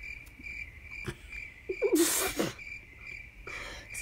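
A thin, high-pitched chirp pulsing several times a second throughout, under a short hum and a breathy exhale about two seconds in, with a softer breath near the end.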